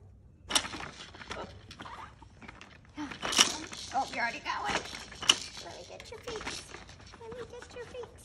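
Clattering and knocking of a plastic baby activity jumper and the toys hanging on it as a baby is lowered into its seat, with sharp knocks loudest about three and a half and five seconds in. Short wavering voice sounds come in now and then, near the end too.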